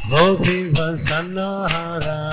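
A man singing a Hindu devotional chant (bhajan), accompanying himself on small brass hand cymbals (kartals) struck in a steady rhythm.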